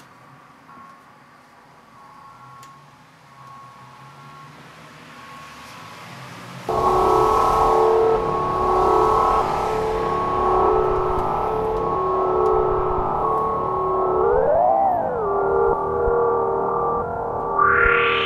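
Electronic music from hardware samplers: faint sustained tones, then about seven seconds in a loud sustained synth chord cuts in abruptly and holds, with one quick pitch bend up and back down near the two-thirds mark.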